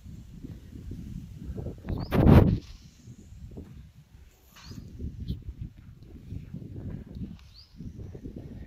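Wind buffeting the microphone in a low, uneven rumble, with one loud whoosh about two seconds in.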